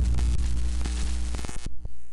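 Intro logo sound effect: electric crackling static over a deep hum, like a neon sign buzzing and sparking, which cuts off suddenly near the end.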